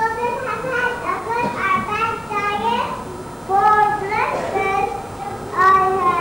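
Young children's high-pitched voices speaking.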